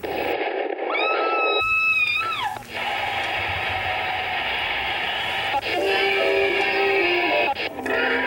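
Television sound as channels are flipped with a remote: short snatches of different programmes, mostly music, including a held note that drops in pitch, each cut off abruptly by the next several times.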